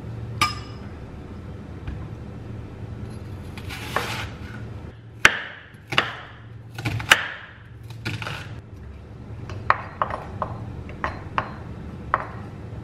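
Large kitchen knife cutting through a whole onion and knocking on a wooden cutting board: a few separate chops, then a quicker run of about five sharp knocks near the end, over a low steady hum.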